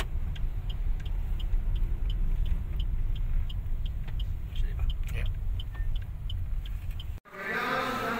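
Car engine and road rumble heard from inside the cabin as the car drives slowly, with a light regular ticking about three times a second. A little after seven seconds the sound cuts off abruptly and gives way to a man speaking in a large hall.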